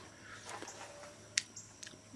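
Faint chewing and mouth sounds of a man eating a cucumber flower, with one sharp click about a second and a half in.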